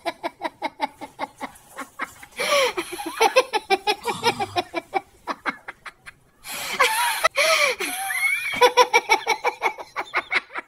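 Sustained helpless laughter in rapid pulses, several a second, breaking off briefly about six seconds in and then starting up again with higher cries that rise and fall.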